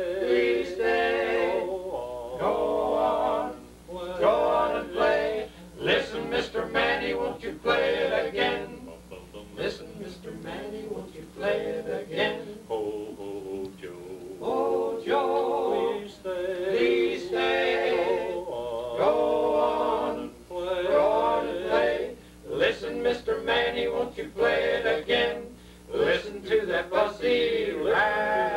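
Male barbershop quartet singing a cappella in four-part harmony, in sung phrases with short breaths between them.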